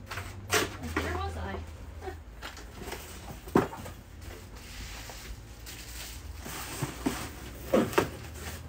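Order packing at a table: paper rustling and items handled in and against an open cardboard shipping box, with a few sharp knocks, about half a second in, midway and near the end.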